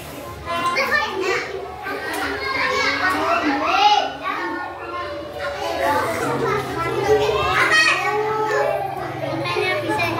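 Several young children talking and chattering over one another.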